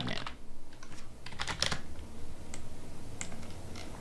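Computer keyboard keys being typed: a quick, irregular run of light clicks, over a steady low hum.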